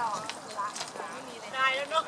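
Voices of people talking, in short bursts with the loudest near the end.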